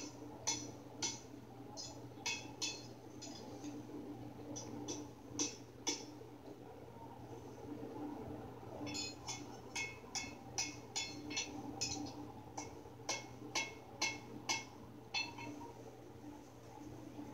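Farrier's hammer striking a horseshoe on a small anvil: sharp metallic clinks in two runs of blows, a pause of a few seconds between them. Heard faintly through a display's speaker, over a low hum.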